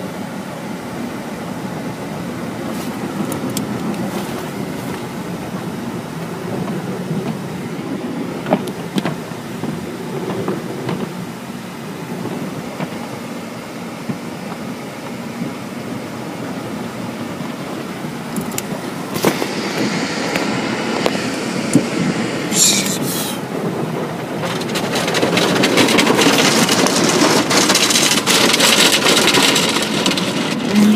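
Automatic car wash heard from inside the car: a steady rumble of the wash machinery and cloth strips working over the car, with a few knocks. From about nineteen seconds in, water spray hissing against the body and windows grows louder and is loudest near the end.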